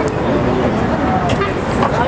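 Low, steady rumble of wind on the microphone, with people's voices talking faintly underneath.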